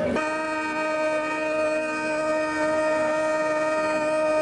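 Sicilian zampogna (bagpipe) holding one steady, unchanging chord of drones and chanter notes, with no tune moving.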